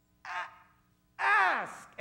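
Speech only: a man's voice, a short word and then one long, loud shouted word falling in pitch.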